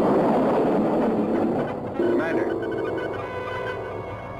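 Science-fiction sound effect of a small spacecraft's thruster firing: a loud rushing noise that starts suddenly and slowly fades. About halfway through, steady electronic tones with a few short warbling glides come in.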